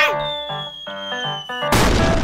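Cartoon background music with a high whistling tone sliding slowly down, then a sudden loud hit sound effect near the end.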